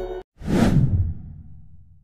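A whoosh transition sound effect about half a second in, with a low rumble that fades away over about a second. Electronic music cuts off abruptly just before it.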